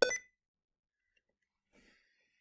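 A short electronic beep from the computer right at the start: the Windows alert sound as the Sticky Keys prompt opens after the Shift key has been pressed repeatedly. Then near silence.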